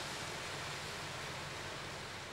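Steady outdoor background hiss with a faint low hum, without words or distinct events.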